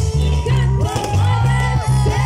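Live band music played loud through a PA system, with a heavy bass line of held low notes changing about every half second and gliding melodic lines above it.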